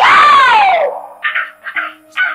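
A man's loud yell, about a second long, rising and then falling in pitch, followed by several short vocal bursts.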